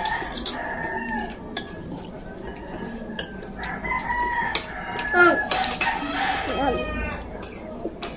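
A rooster crowing a few seconds in, over spoons and forks clinking against plates and bowls.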